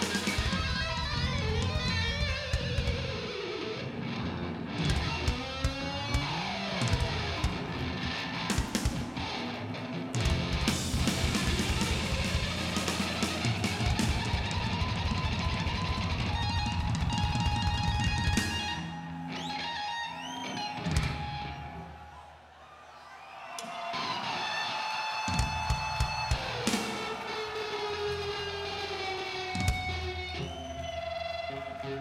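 Live heavy metal band playing: electric guitar lines with notes that bend up and down, over bass and a drum kit with runs of fast hits. The playing thins out briefly about three-quarters through, then picks up again.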